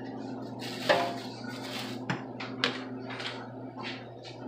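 Knocks and rustling as live blue crabs are handled out of a paper bag at a steaming stockpot: a sharp knock about a second in is the loudest, followed by several lighter knocks, over a steady background hum.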